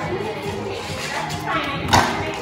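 Background music playing, with a brief thud just before the end.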